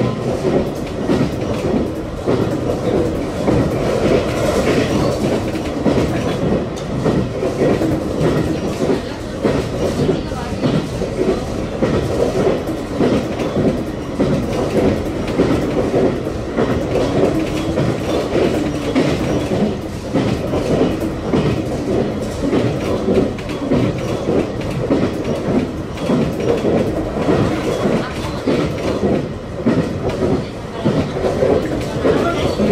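Running noise of a JR Kyushu 817 series electric train heard from inside the passenger car: a steady rumble of the wheels on the rails as the train travels at speed.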